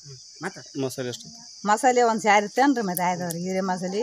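Steady high-pitched insect buzz, with a woman's voice breaking in briefly and then talking through the second half.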